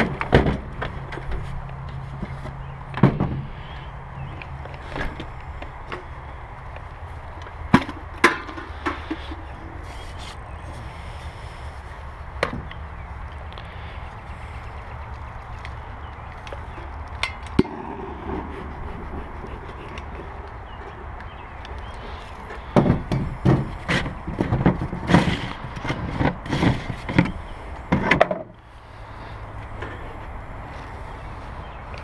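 Bee smoker being loaded and lit: scattered clicks and knocks of handling the can and lighter over a steady low rumble, then a dense run of rapid knocking and rustling for about five seconds near the end.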